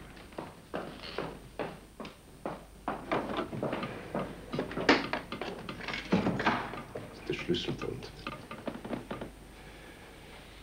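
Scattered soft knocks and thuds of someone moving about a room and handling a desk to fetch an iron cash box.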